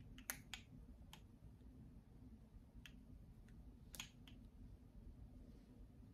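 Near silence: low room tone with a few faint scattered clicks, the loudest about four seconds in.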